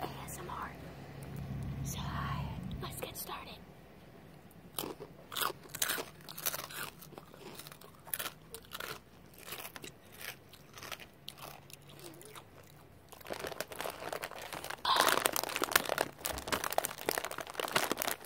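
Someone biting and chewing crunchy food close to the microphone: a run of short sharp crunches, scattered at first and coming thick and fast over the last five seconds.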